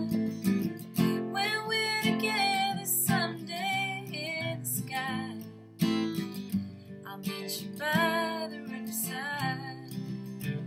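A song with a strummed acoustic guitar and a woman's voice singing a melody in phrases.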